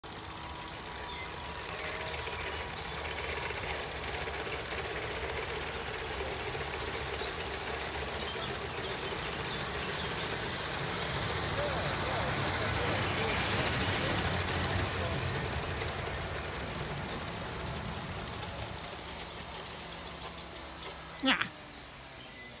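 16mm-scale garden railway train running along the track with a rapid rhythmic clatter of wheels on rail. It grows louder as it passes close, about halfway through, then fades.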